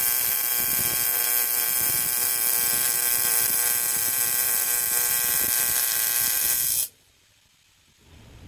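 TIG welding arc on aluminum: the AC arc gives a steady buzz that cuts off suddenly about seven seconds in as the arc is broken.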